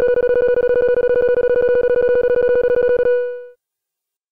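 A loud electronic tone on one steady pitch, pulsed rapidly like a telephone ring, in a breakcore track. It stops about three seconds in with a short fade.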